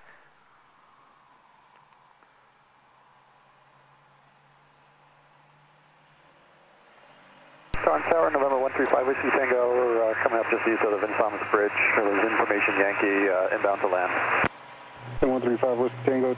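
Aircraft radio transmission heard through the headset intercom. After several seconds of near silence, a click opens a narrow-sounding radio voice halfway through. The voice talks for about seven seconds and cuts off with another click.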